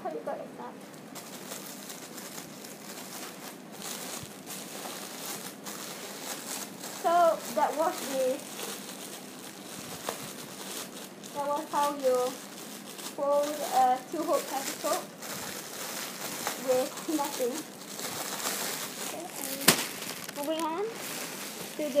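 Clear plastic bag crinkling and rustling as the folded hoop petticoat packed inside it is handled, with one sharp click near the end.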